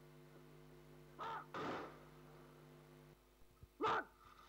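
Crows cawing: two harsh caws in quick succession about a second and a half in, and a third near the end, over a steady electrical hum that cuts off about three seconds in.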